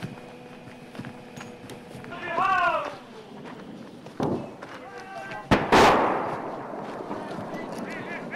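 Gunfire: a sharp shot about four seconds in, then a much louder shot or blast about a second and a half later, followed by a long echo. A voice shouts briefly before the shots, and fainter cracks are scattered throughout.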